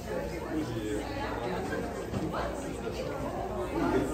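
Indistinct background chatter of several people talking in a large room.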